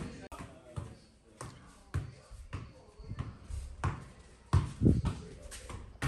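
Football being kicked and bouncing on a carpeted changing-room floor in a game of two-touch: about ten sharp thuds, irregularly spaced.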